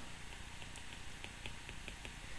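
Faint, quick ticks of a stylus tapping on a tablet screen during handwriting, several a second, over low room hiss.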